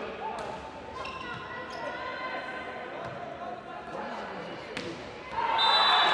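Volleyball rally in a large indoor hall: the ball is struck with a few sharp slaps while players and spectators call out. A louder burst of shouting rises near the end.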